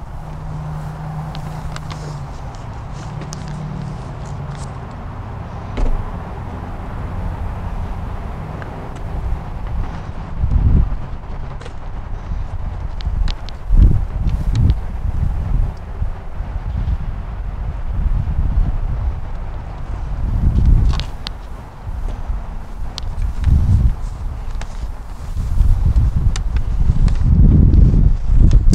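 Wind rumbling and buffeting on a hand-held microphone, with handling noise and footsteps as the camera is carried around a parked car; a low steady hum in the first few seconds, then irregular heavy gusts.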